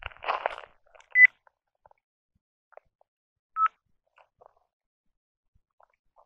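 Two short electronic beeps from a handheld device being set up: the first higher and louder about a second in, the second lower at about three and a half seconds. A brief soft rustle comes just before them.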